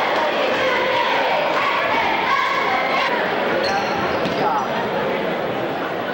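A basketball being dribbled on a hardwood gym floor, with a few high sneaker squeaks past the middle, over the steady chatter of spectators in the gymnasium.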